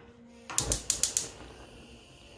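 Gas stove burner's spark igniter clicking rapidly, about half a dozen ticks in under a second, as the burner is lit.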